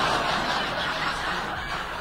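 Studio audience laughing at a punchline, a crowd's laughter that slowly dies down.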